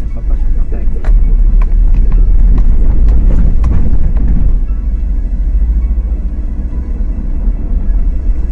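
Car cabin noise while driving: a heavy low rumble with a run of knocks and rattles over a rough, patched road in the first half, easing off after about four and a half seconds.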